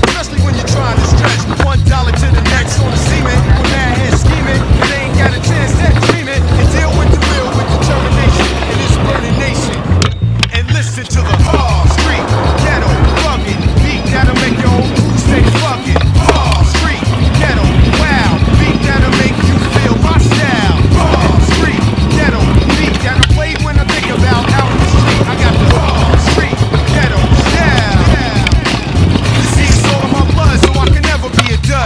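A hip-hop beat with a repeating bass line, over the sound of freestyle kick-scooter wheels rolling on concrete with sharp clacks from tricks and landings. There is a brief break about ten seconds in.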